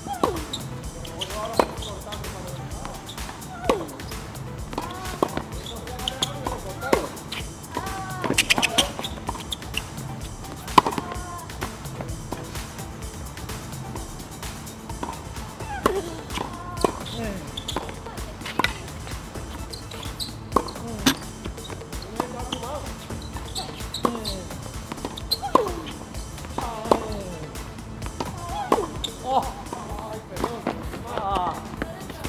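Tennis ball hit back and forth with rackets in a rally on a hard court: sharp hits and bounces a second or two apart, with voices in the background.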